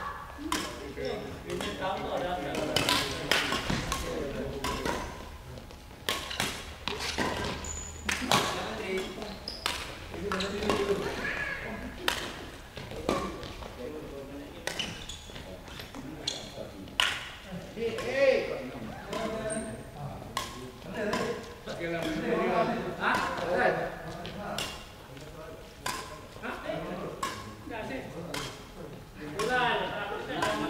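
Badminton rackets striking shuttlecocks, sharp hits at irregular intervals, echoing in a large sports hall, with voices in the background.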